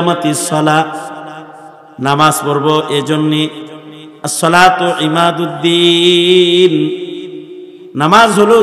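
A man chanting in a drawn-out, melodic voice through a microphone and loudspeakers. There are three long phrases, each held on steady notes and trailing off in echo.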